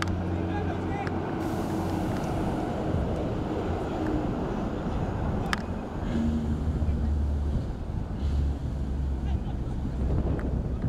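Open-air ambience of a low rumble of wind on the microphone, with indistinct voices from around the pitch and a single sharp knock about five and a half seconds in.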